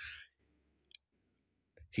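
A pause in a man's talk: a short breath as a sentence ends, then near silence broken by one faint click about a second in, before his next word begins at the very end.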